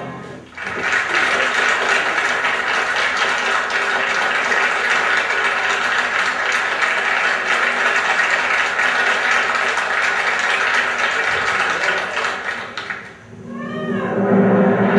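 Concert audience applauding steadily, fading out near the end.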